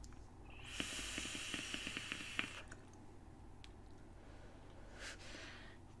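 An electronic cigarette being puffed: a faint hiss with small crackles for about two seconds as the coil vaporises the e-liquid while it is drawn on, then a short breath near the end.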